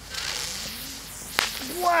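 A ground fountain firework catching and spraying sparks with a steady hiss that starts suddenly, with one sharp crack about one and a half seconds in. A voice shouts "wow" right at the end.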